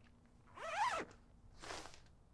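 A tent door zipper being pulled: one long zip about half a second in, its pitch rising then falling, then a second, shorter zip near the end.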